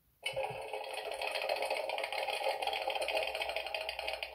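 A sound book's small built-in speaker plays a recorded hamster-wheel effect: a fast, steady rattling, thin and lacking bass. It starts abruptly just after the beginning.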